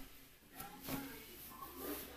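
A few faint, brief voice sounds, about half a second in and again near the end, amid mostly quiet.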